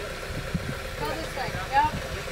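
A Jeep Wrangler's engine running steadily at idle, with indistinct voices nearby.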